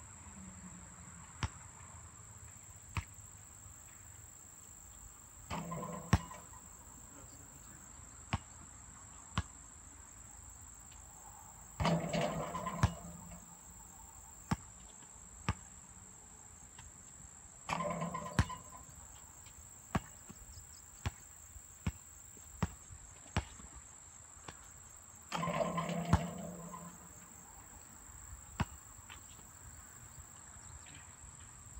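A basketball bouncing on an outdoor asphalt court in single sharp thuds, with four louder clanging hits about a second long, typical of shots striking the metal rim and backboard. A steady high insect buzz runs underneath.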